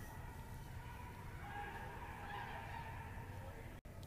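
Faint ice-rink ambience: a low, even haze of distant arena sound, with a faint tone rising out of it briefly in the middle.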